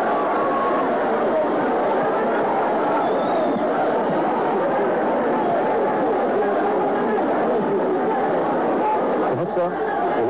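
Boxing arena crowd: many voices shouting and talking over one another in a steady din.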